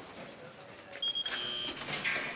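Electronic buzzer of a barred security gate sounding briefly: a high, steady buzz starts about a second in and cuts off suddenly just under a second later.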